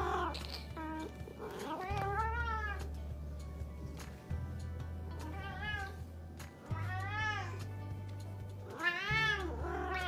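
A cat meowing about five times, each meow rising then falling in pitch, over background music with a low bass line.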